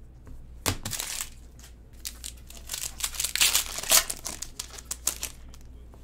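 Foil trading-card pack wrapper crinkling and tearing as it is opened: an irregular run of crackling rustles starting about a second in, loudest in the middle.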